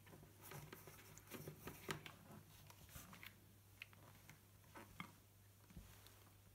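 Near silence: faint scattered taps and rubs of a plastic bucket and PVC elbow being handled, over a low steady hum.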